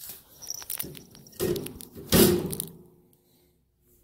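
Knocks, clatter and rustling from handling around a wire shopping cart, with two louder thumps about a second and a half and two seconds in.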